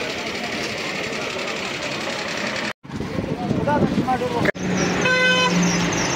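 Street hubbub with voices, then near the end a vehicle horn sounding one steady, held note for about a second and a half.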